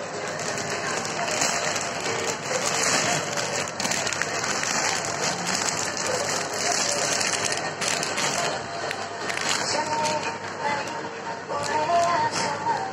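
Plastic packaging rustling and crinkling as a courier mailer bag and the clear plastic wrap around a saree are handled and opened, with music in the background.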